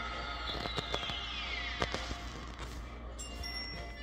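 Background music from a television programme, with a falling whistle-like tone about half a second in and a few light clicks.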